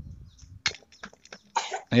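A short cough, then several sharp separate clicks of small scrap metal parts, a carburetor body and a metal bracket, knocking together as they are handled.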